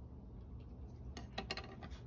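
A few light, sharp clicks and knocks bunched together about a second and a half in, from a small plastic cup of soil being handled on a wooden table.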